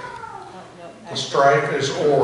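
A person's voice: a phrase trails off at the start, there is a short quieter pause, and another phrase begins a little over a second in.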